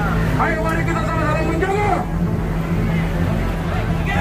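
A voice calling out through a police vehicle's loudspeaker in long, drawn-out phrases, over a steady low engine hum.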